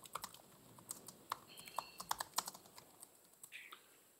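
Faint keystrokes on a computer keyboard, irregular clicks in quick runs, as a terminal command is typed.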